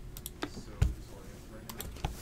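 Hands handling trading-card packs and a cardboard blaster box on a table: a few light clicks and taps, with one dull thump a little under a second in.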